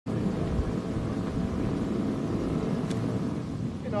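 Steady low rumble of a jet airliner passing overhead, with a brief faint click about three seconds in.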